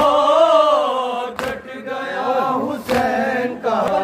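A group of men chanting an Urdu noha, a Shia mourning lament, in unison without instruments, with long drawn-out notes. A sharp slap cuts in about every second and a half, the beat of matam: hands striking chests.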